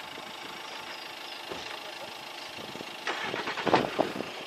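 Steady outdoor background noise, with faint voices now and then and a louder stretch of voices in the last second.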